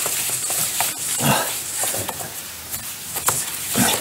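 Rope being wrapped round a wooden mooring post, sliding and creaking against the wood, with two louder grunt-like creaks, one about a second in and one near the end.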